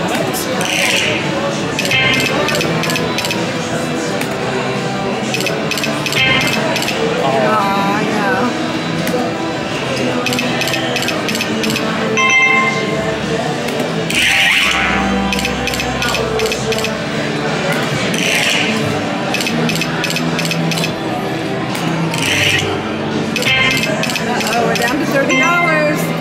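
Video slot machine's electronic game music and spin sound effects: steady clicking while the reels spin, with a bright chime every few seconds. Casino-floor chatter runs underneath.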